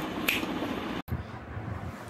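Low room noise with one short, light clink of a spoon against a dish about a quarter second in. About a second in the sound cuts out for an instant and comes back as quieter room noise.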